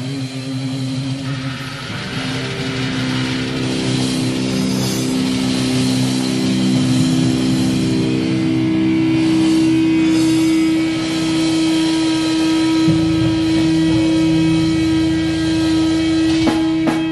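Distorted electric guitars ringing out slow, sustained notes that swell in loudness, settling into one long held note over the last few seconds.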